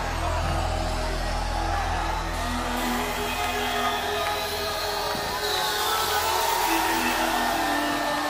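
Live band music at a concert, with no singing; held low notes fade out about three seconds in.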